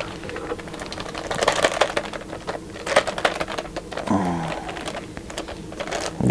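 Clear plastic sleeve rustling and crackling in quick, irregular small clicks as a rolled poster is worked out of it by hand. A brief grunt of effort comes about four seconds in.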